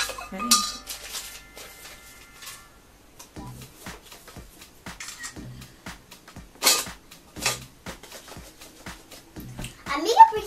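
A metal spoon stirring and knocking against the inside of a stainless steel stockpot: a run of irregular clinks and scrapes, with a few louder knocks.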